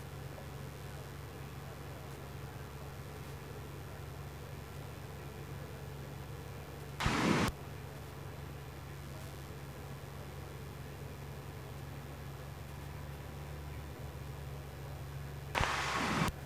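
Steady low drone of a Cessna 172G's engine and propeller at reduced power on final approach, heard faintly through the headset intercom. A brief rush of noise cuts in for about half a second a little past the middle.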